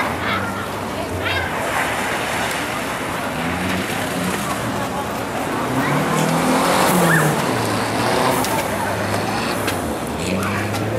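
Renault 5 GT Turbo's turbocharged four-cylinder engine revving up and down as the car is driven hard on loose dirt, loudest about seven seconds in.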